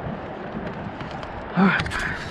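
Steady outdoor background noise with a low rumble, and a short voice sound about one and a half seconds in, followed by a couple of faint clicks.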